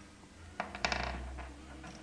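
A few small, sharp clicks of plastic dummy canary eggs knocking together as they are taken out of the nest, bunched a little past the middle, then faint handling noise.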